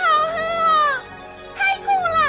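High-pitched, squeaky cartoon voices of the fly characters exclaiming in short phrases, over background music.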